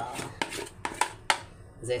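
Wooden spoon knocking and scraping against a metal mixing bowl while soft soap paste is scraped out of it: about five short, sharp clicks spread through the two seconds.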